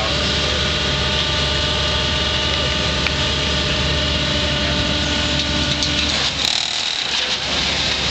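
Concrete mixer's engine running steadily at a constant speed while concrete is chuted into a wheelbarrow; the steady drone drops away about six seconds in, leaving rougher background noise.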